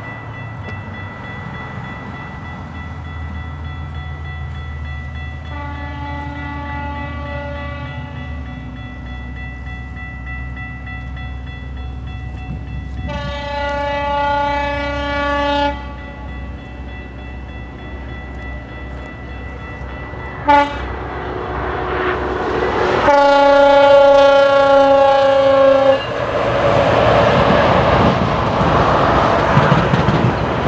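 A GO Transit commuter train sounds its horn in the grade-crossing pattern as it approaches a level crossing: long, long, short, long, the last blast dropping slightly in pitch as it nears. The crossing-signal bell rings steadily throughout. From about 26 s the train's passing rumble and wheel noise build as it crosses the road.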